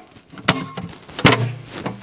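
Two sharp clicks, under a second apart, from a circuit breaker being worked by hand in a steel breaker panel, with handling noise from the panel between them.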